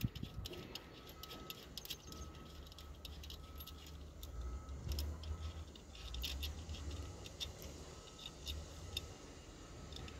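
Scattered light metallic clicks and clinks of hand tools and metal fittings being worked while a starter motor is fitted to an excavator.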